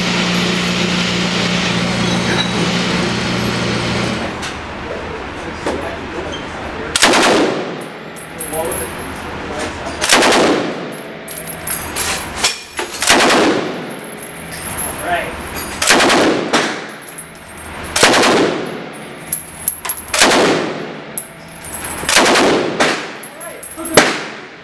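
Bren light machine gun in .303 British firing about seven short bursts on full automatic from its open bolt, one every two to three seconds from about seven seconds in. Each burst rings on in the enclosed firing range. A steady low hum fills the first few seconds before the firing starts.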